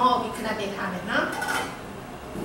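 A metal lid clinking as it is set onto a stainless steel stockpot to cover it, with a woman talking over it.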